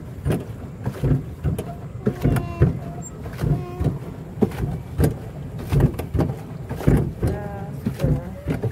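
Irregular low knocks and rumble aboard a small river boat, with people's voices talking in the background now and then.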